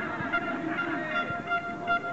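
A horn sounding one steady, held note, then several short honks near the end, over the voices of spectators around a football pitch.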